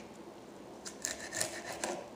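Kitchen knife cutting through leafy greens: a few short strokes, starting about a second in.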